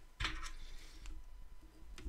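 Faint ticks and light rustling as hands work tying thread on a hook held in a fly-tying vise.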